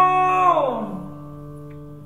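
A male voice holds a sung note over a ringing acoustic guitar chord. About half a second in, the voice slides down in pitch and fades away, leaving the chord ringing softly.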